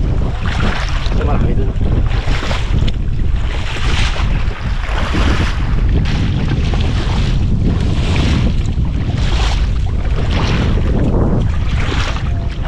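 Wind buffeting the microphone in a steady low rumble, with splashing from legs wading through shallow water about once a second.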